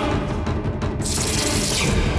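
Suspenseful drama background score with low timpani rolls, and about a second in a loud hissing rush of noise that lasts most of a second.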